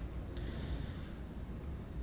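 Low, steady background rumble inside a car cabin, with one faint click about a third of a second in.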